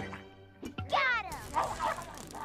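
A cartoon creature's voice: a short call that slides down in pitch about a second in, followed by a few quick chattering sounds, over background music.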